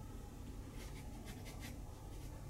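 Faint room tone with a low hum and a quick run of soft, short scratchy rustles about a second in.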